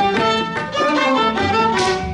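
An orchestra playing a melody led by violins and other bowed strings, the notes changing quickly, with a few sliding pitches about halfway through.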